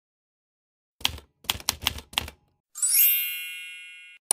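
Typewriter sound effect: four quick keystrokes, then the carriage-return bell rings once and fades.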